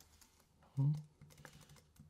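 Computer keyboard keys tapped several times in the second half, faint clicks used to zoom the timeline with shortcut keys, after a short hum of voice just under a second in.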